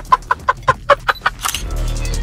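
People laughing hard inside a car cabin, in quick 'ha-ha-ha' pulses about five a second that die away about one and a half seconds in. Background music with a beat starts near the end.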